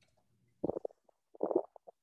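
Two short, muffled voice murmurs, broken up as if over a video-call line, about half a second in and again near a second and a half.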